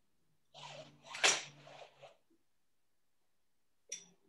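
A short burst of breath from a person, building up and then bursting out in one sharp, loud peak about a second in, then trailing off.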